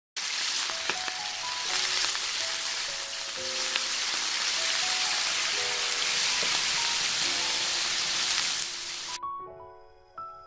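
Potato hotteok patties sizzling as they fry in oil in a pan: a steady, loud sizzle that cuts off suddenly about nine seconds in.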